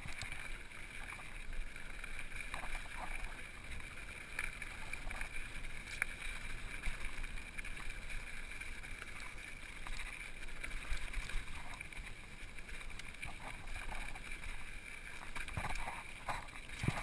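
Mountain bike rolling down a loose, rocky gravel trail: a steady rush of tyre and ride noise with scattered knocks and rattles from the bike going over stones.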